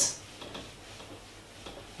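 A few faint, sparse ticks against a whiteboard as a hand works at it. A man's spoken word ends right at the start.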